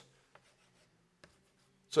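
Two faint, short taps of chalk on a blackboard, about a second apart, against near silence; a man's voice starts right at the end.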